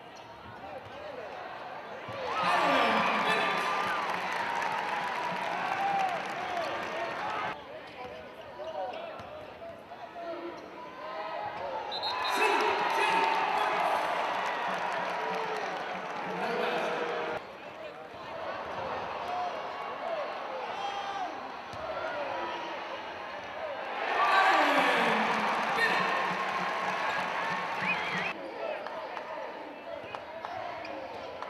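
Live basketball game sound in an arena: the ball bouncing on the court amid crowd voices, with the crowd cheering loudly in three bursts, about two, twelve and twenty-four seconds in, each cut off abruptly.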